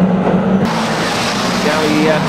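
Saloon stock car engines running as the pack laps the oval, a steady drone. About two-thirds of a second in the sound changes suddenly to a brighter, hissier mix of engine and track noise.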